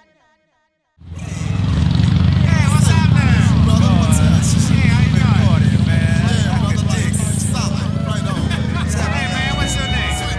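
Motorcycle engine running with a low, steady rumble, with many overlapping voices over it. Both start suddenly about a second in, after a moment of near silence.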